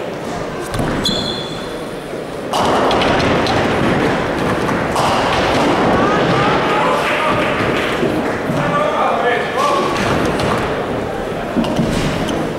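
Nine-pin bowling in a hall: a heavy ball thuds down onto the lane and rolls, and pins clatter as they are knocked down, under a loud, continuous din of crowd voices and shouting that swells suddenly a couple of seconds in.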